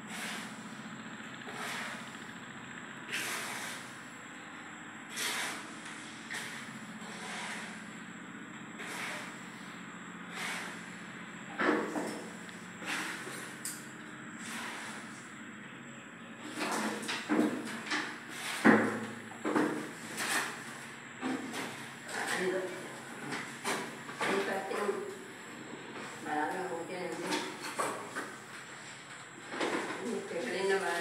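Voices talking, mostly in the second half, among scattered sharp clicks and knocks.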